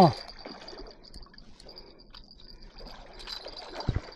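Faint, irregular splashing and trickling water from a hooked turtle thrashing at the surface beside the dock, over a thin, steady high insect chirr. A single light knock comes near the end.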